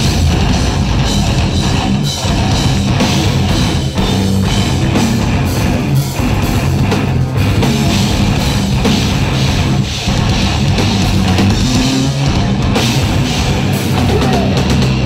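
Heavy metal band playing live, heard from the audience: distorted electric guitars, bass and a pounding drum kit, loud and dense throughout.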